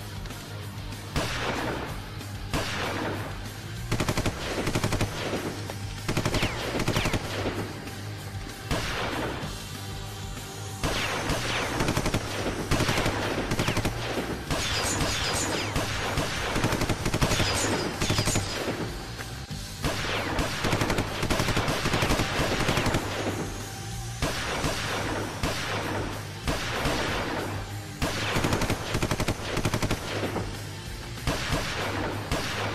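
Heavy gunfire: shots in quick succession, almost without a break, with a few short lulls, over background music.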